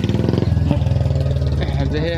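A motorcycle engine running close by, its pitch stepping up about half a second in.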